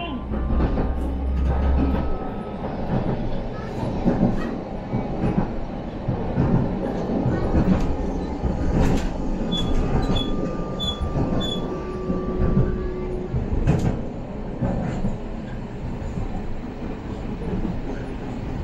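Low-floor city tram running along street track, heard from inside the car: a steady rolling rumble with occasional knocks from the wheels and rails. Near the start a faint motor whine rises in pitch as the tram picks up speed.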